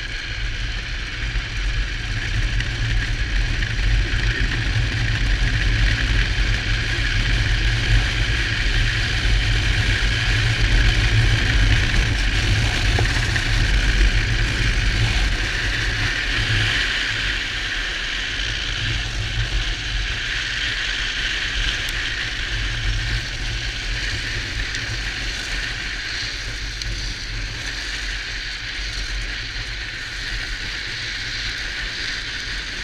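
Drift trike rolling downhill at speed: a steady low rumble of wind buffeting the onboard camera's microphone over a continuous hiss of the wheels on the road, louder through the first half and easing a little after that.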